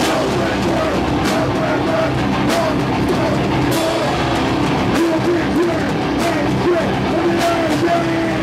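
A rock band playing loud live music: drum kit with repeated cymbal crashes under distorted electric guitars.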